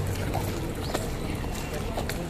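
Outdoor crowd background: faint, scattered voices over a steady low rumble.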